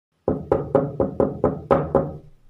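Knocking on a door, eight quick knocks at about four a second, each with a short hollow ring.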